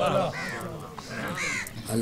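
Crows cawing twice, about half a second and a second and a half in, over faint background talk.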